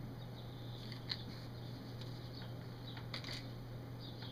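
Quiet puffing on a briar tobacco pipe: a few faint lip smacks on the stem over a steady low hum.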